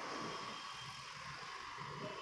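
Faint room tone: a steady low hiss with no distinct sounds.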